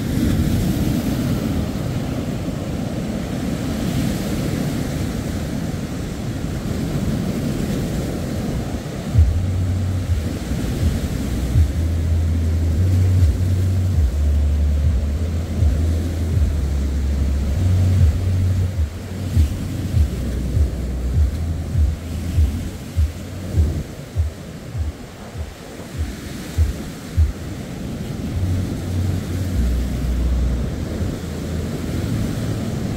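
Rough surf washing and breaking in a steady rush. From about a third of the way in, wind buffets the microphone in irregular gusts.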